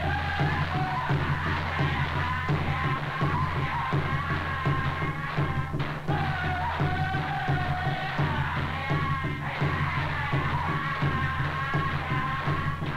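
Ceremonial drum-dance music: drums beaten in a steady quick rhythm, about four beats a second, under many voices chanting together.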